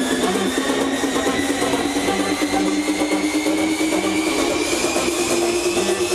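Electronic dance music played over a festival sound system: a synth tone rises slowly and steadily in pitch over a fast, busy rhythm, an EDM build-up.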